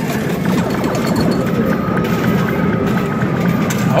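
Coin pusher arcade machine playing its music and electronic sounds over a steady clatter of coins and plastic chips dropping onto the pusher shelves, with a held tone through the middle.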